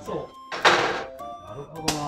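Speech over background music, with a short noisy burst about half a second in and a sharp clunk near the end from work on the car's underside.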